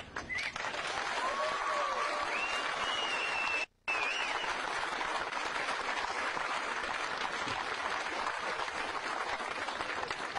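Crowd applauding steadily, many hands clapping at once. The sound cuts out completely for a moment a little under four seconds in, then the applause carries on.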